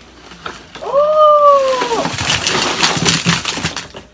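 A drawn-out, high 'ooh' of excitement, then a couple of seconds of crinkling and rustling from the candy box's packaging as it is handled and lifted.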